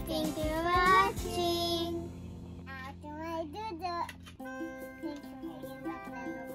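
A young child's high voice sings a short, sliding line over light background music, with a held chord under it. The music carries on with simple held notes once the singing fades.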